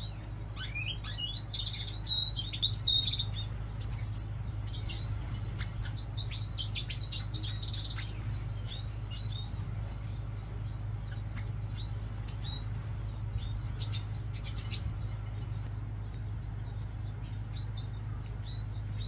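Small aviary birds chirping: many short, high calls, busiest in the first eight seconds and sparser after, over a steady low hum.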